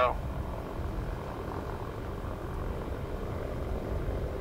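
Britten-Norman BN-2 Islander's twin propeller engines running steadily at low power as it taxis, heard from a distance as an even drone with a low rumble.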